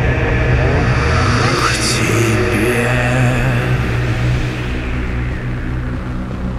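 Dark ambient intro sound design: a loud, steady low rumbling drone with sweeping whooshes and glides, the high end thinning out near the end.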